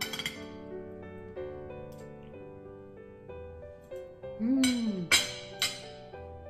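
Metal fork and knife clinking and scraping on a ceramic plate while rice is eaten, with a sharp clink at the start and three louder clinks near the end. Soft piano music plays underneath throughout.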